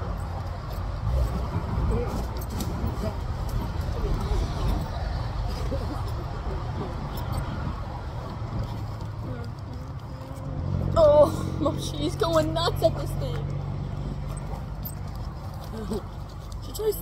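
Outdoor background sound: a steady low rumble of road traffic, with people talking nearby; the voices come up louder for a couple of seconds about eleven seconds in.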